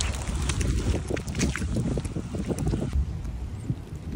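Wind rumbling on the microphone, with scattered irregular light ticks of rain falling on an umbrella canopy overhead.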